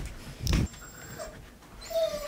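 A dog whimpering faintly: a brief high whine, then a falling whine near the end, with a soft bump about half a second in.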